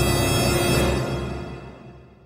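Background music of sustained held tones over a low drone, fading out over the second half.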